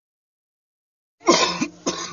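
Silence for just over a second, then a man coughing hard twice.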